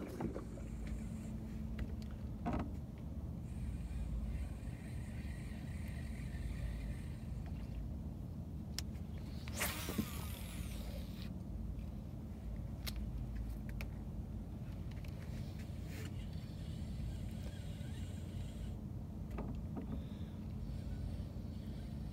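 Steady low hum and rumble of a small boat motor, most likely an electric trolling motor holding the boat while fishing. About ten seconds in, a quick falling swish of a fishing cast cuts through it.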